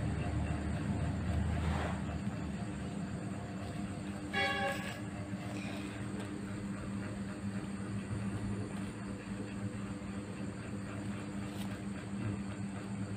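A steady low mechanical hum runs throughout. About four and a half seconds in, a brief steady-pitched tone sounds once, lasting under a second.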